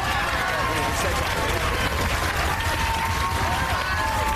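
Studio audience applauding steadily, with voices calling out over the clapping.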